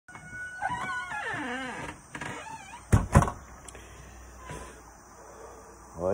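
A dog whining and howling, its pitch sliding up and down, followed by two sharp knocks about three seconds in.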